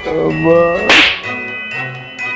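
A voice exclaiming a rising "Oh", cut off by a single sharp slap-like smack about a second in, over background music with chiming tones.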